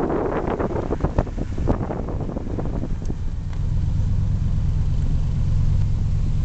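Car driving slowly, its engine and road rumble heard from inside the car: irregular crackling over the rumble for the first couple of seconds, then a steadier low drone from about halfway.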